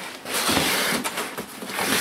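Cardboard scraping and rustling as a cardboard box is dragged out of a larger, torn cardboard carton. There are two long scrapes, one starting about half a second in and one near the end.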